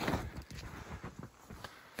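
Footsteps in snow, a few irregular steps, loudest at the start and fainter after about a second.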